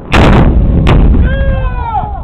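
AT-4 84 mm disposable anti-tank launcher firing: one very loud blast right at the start, followed about three-quarters of a second later by a sharper, shorter crack as the round hits the target. A voice calls out near the end, falling in pitch.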